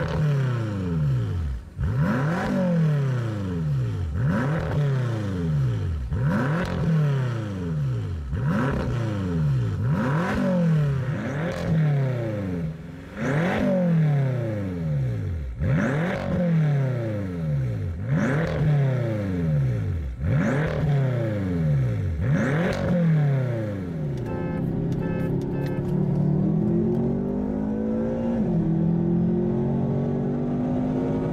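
BMW F10 M5's 4.4-litre twin-turbo V8 free-revved while stationary, about a dozen sharp blips roughly two seconds apart, each rising quickly and falling back to idle. The later blips are from the Competition Package car's factory sport exhaust. Near the end the revving gives way to the steadier note of the cars driving, pitch drifting up and down.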